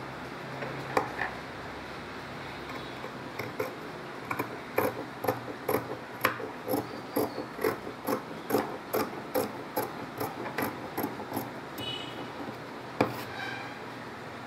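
Fabric scissors snipping through cloth in a steady run of short crisp snips, about two or three a second, with a louder click near the end.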